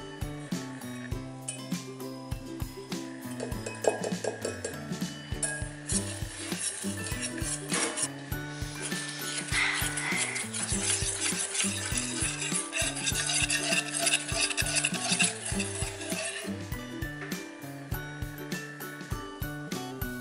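Wire whisk beating egg yolk batter in a stainless steel bowl: rapid scraping and clinking of wire against metal, starting about five seconds in and stopping about sixteen seconds in.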